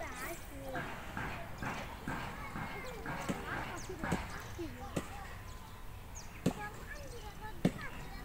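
People talking in the background, with several sharp clicks or knocks, the loudest about six and a half and seven and a half seconds in.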